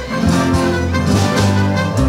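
Live folk string ensemble playing an instrumental passage: strummed acoustic guitars and plucked lutes, with a trumpet playing held notes over them.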